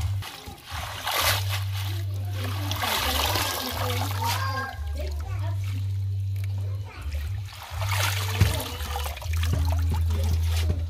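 Water splashing and sloshing in a steel basin as hands swish and rub leafy greens to wash them, in a series of irregular splashes.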